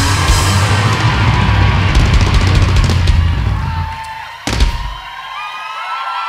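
Live rock band with electric guitars and drums ringing out the song's final chord, which fades, then a last loud crash about four and a half seconds in. After it comes crowd cheering and whistling.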